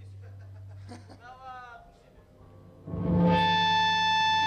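Electric guitar rig on a live stage: a steady low amplifier hum, then about three seconds in a loud guitar chord struck and left ringing as one held, steady sound.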